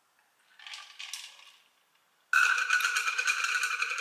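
A loud, dense rattling with a steady ringing tone in it, starting suddenly a little over two seconds in and carrying on, after a faint soft sound about a second in.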